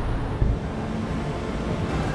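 Steady city street traffic noise, a low rumble without voices, with a single low thump about half a second in.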